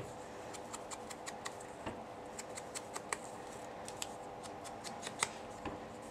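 Sponge dauber dabbing ink onto the edges of a small piece of cardstock: faint, quick, irregular taps, a few a second, over a low steady hum.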